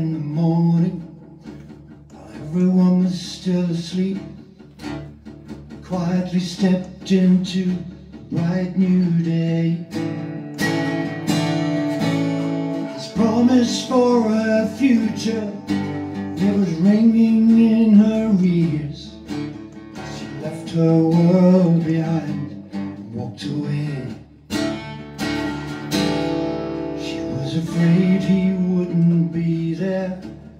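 Solo acoustic guitar played live, with a man's singing voice coming in and out over it in phrases.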